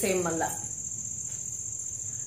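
A steady high-pitched trill, like a cricket's, runs on without a break. A woman's voice ends about half a second in, leaving the trill over faint room noise.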